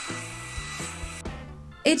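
A hair dryer blowing a steady hiss of hot air onto chunks of candle wax to melt them, stopping a little over a second in. Background music plays underneath.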